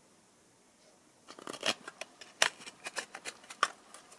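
Near silence for about a second, then a run of irregular small clicks and scrapes as the circuit board is worked out of the electricity meter's plastic housing by hand.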